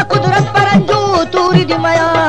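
Instrumental Pashto folk music. Tabla strokes with a low bass note that bends in pitch, several a second, play under sustained melodic instrument lines.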